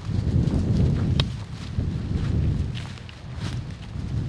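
Footsteps walking through dry leaves and brush, with irregular rustles and crunches and a sharper snap about a second in, over a steady low rumble on the microphone.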